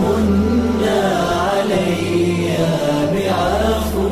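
Islamic nasheed sung by a male voice: a slow, winding chanted melody over a low sustained hum.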